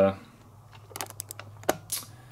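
A few short, sharp clicks in the second half, the loudest shortly before the end, over a low steady hum.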